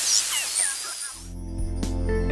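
Shortwave hiss from a 12AU7 regenerative receiver tuned near 7.181 MHz on the 40 m band, with a few whistles sliding down in pitch as the dial is turned, fading out. About a second in, instrumental background music starts.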